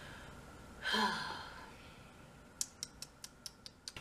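A woman's short voiced sigh, falling in pitch, about a second in. Near the end, a quick run of about eight sharp clicks, roughly five a second.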